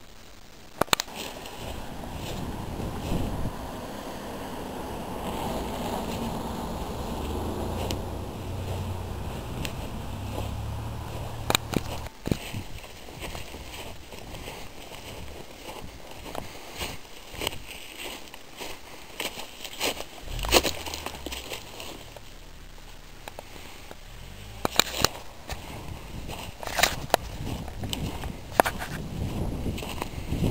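Wind noise on the camera microphone outdoors, with low rumbling gusts and a scattering of sharp clicks and crackles.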